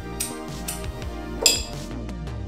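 Three light clinks of barware over background music. The loudest and most ringing comes about one and a half seconds in.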